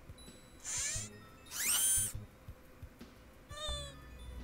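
Three high-pitched, squeaky cartoon-style vocal sounds with no words. The second rises in pitch and is the loudest, and the last, near the end, is short and wavering.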